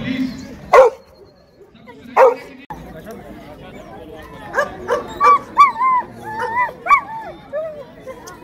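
Dogs barking: two loud single barks about a second and a half apart, then a quick run of high, rising-and-falling yips and whines through the second half.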